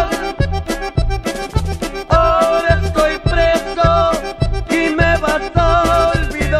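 Tejano song's instrumental passage: accordion playing the melody over a steady bass-and-drum beat, about two beats a second.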